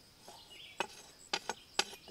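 A machete blade scraping against freshly cut tree bark as scent paste is smeared into the cuts: a few short scrapes, the first about a second in.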